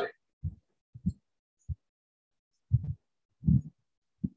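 About six short, dull, low knocks at uneven intervals from a marker pen striking and pressing on a whiteboard during writing.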